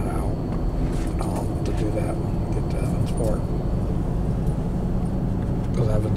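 Car driving, its steady engine and road rumble heard from inside the cabin.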